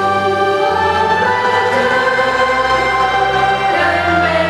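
A choir singing a slow, sustained sacred phrase over steady, held instrumental bass notes.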